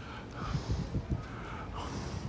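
A man breathing close to a phone microphone while walking, with irregular low rumbling bumps on the microphone.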